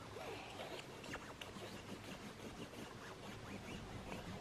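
Faint squeaking and rubbing of a water-filled colouring pen's tip scrubbed back and forth over a water-reveal colouring page, in short irregular strokes.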